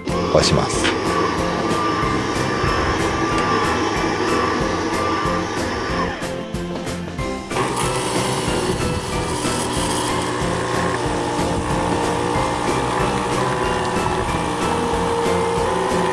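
Nescafé Gold Blend Barista PM9631 instant-coffee machine running its brew cycle: a steady motor and pump whir, with a short lull about six seconds in before it picks up again. Coffee begins to pour near the end.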